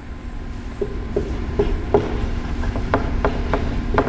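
Dry-erase marker writing on a whiteboard: a string of short, irregular squeaks and scratches as a word is written out stroke by stroke.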